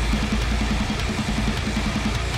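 A metal band playing live: heavily distorted electric guitars run a fast, repeated low riff over bass and a drum kit with crashing cymbals.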